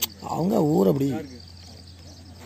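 Crickets chirping steadily in the grass, a thin, high, pulsing trill. A person's voice breaks in briefly during the first second with a rising-and-falling hum or word. A sharp click sounds right at the start.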